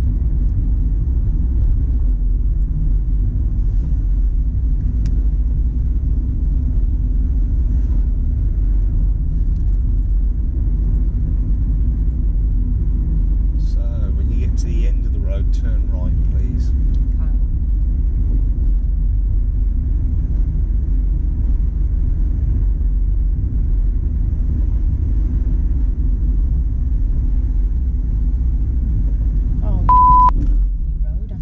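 Steady low road rumble inside a moving car's cabin, engine and tyre noise at an even level as the car drives along.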